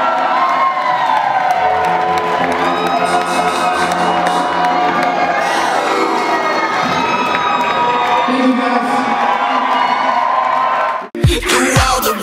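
Concert crowd cheering and screaming, many voices rising and falling in pitch. Near the end it cuts abruptly to loud electro-pop band music with heavy bass.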